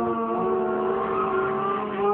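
A child singing long held notes into a plastic cup used as a pretend microphone, over a pop ballad's backing music.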